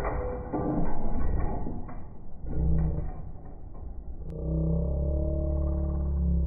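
Steel shackles and the broken pieces of a 3D-printed plastic carabiner clattering and rattling in a pull-test rig just after the carabiner snaps under load, then a sharp click about four seconds in and a steady low hum.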